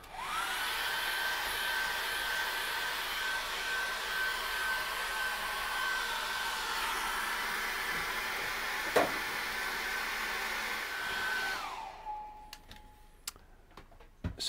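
Handheld hair dryer switched on and blowing steadily with a high whine, drying wet acrylic paint on a canvas. About eleven and a half seconds in it is switched off and its whine drops in pitch as the motor runs down. A single sharp click is heard near the nine-second mark.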